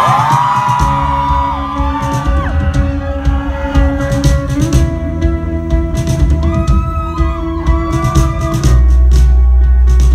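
Live rock band playing an instrumental passage: electric guitars with bending lead notes over bass guitar and drum kit, ending on a loud held low chord near the end.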